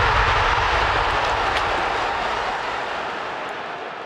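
Steady rushing noise from a logo outro sound effect, fading slowly and evenly.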